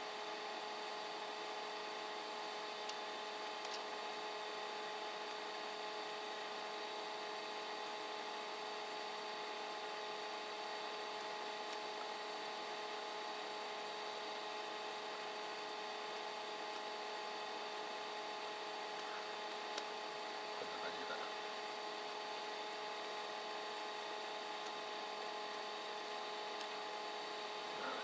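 Steady electrical whine of running equipment: several fixed tones held over an even hiss, unchanging throughout.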